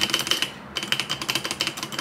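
Typing on a newly built KBD Craft Adam mechanical keyboard with linear switches: a rapid run of poppy keystrokes with a short pause about half a second in. The unlubricated stabilizers sound a bit quacky or loose.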